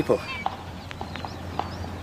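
A pony's hooves clip-clopping in a slow, uneven rhythm as the pony trap pulls away.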